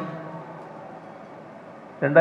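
A pause in a man's speech at a lectern microphone: the last word dies away over the first half-second, leaving a steady background hiss from the microphone and sound system.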